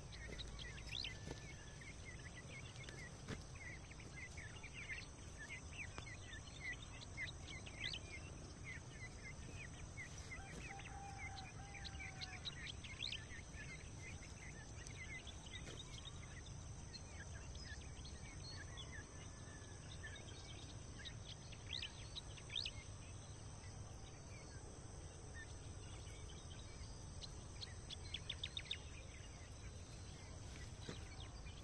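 Faint open-country ambience: many short, high bird chirps scattered throughout, over a steady high insect drone and a low rumble.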